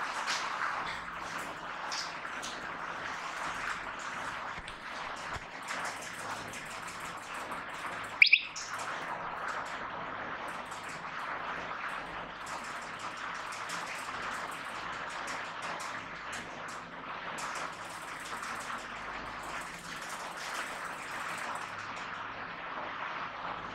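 Classroom room tone: a steady hiss with scattered faint clicks, broken about eight seconds in by one brief, sharp high squeak.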